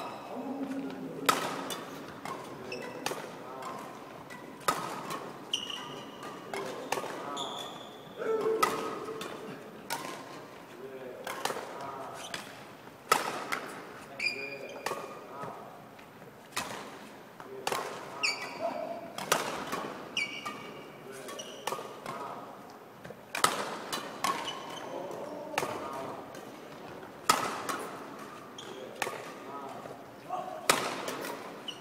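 Badminton rackets striking shuttlecocks in a fast feeding drill, a sharp crack roughly once or twice a second, with sneakers squeaking on the wooden court floor between hits.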